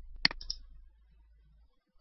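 A few clicks of a computer mouse in quick succession, the sharpest about a quarter second in, over a faint low hum.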